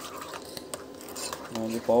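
Metal spoon stirring a thick mayonnaise-and-ketchup sauce in a ceramic bowl, a soft scraping with a few light clicks of spoon against bowl. A voice starts near the end.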